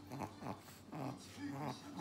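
A small dog, a Chihuahua, making a series of short vocal sounds that bend up and down in pitch.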